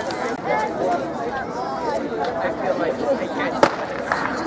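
Spectators talking and chattering, then a single sharp crack from a starter's pistol near the end, the loudest sound here, starting a 100 m heat.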